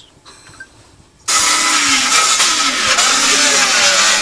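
A loud, harsh mechanical noise, like a small motor running, starts suddenly about a second in and holds steady, its pitch wavering up and down.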